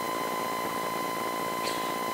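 A pause in speech filled by steady background hiss with a thin, steady high-pitched whine running underneath, typical of electrical noise in a microphone and sound-system chain.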